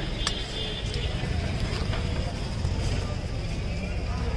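Busy street ambience: a steady low traffic rumble with voices in the background. A sharp click comes about a quarter second in, and a fainter one about a second in.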